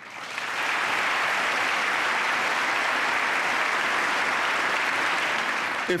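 Applause from a large seated audience: many people clapping, swelling over the first half second and then holding steady, until a man's voice resumes at the very end.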